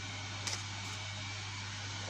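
Steady low hum and hiss of the kitchen background, with one faint tick about half a second in.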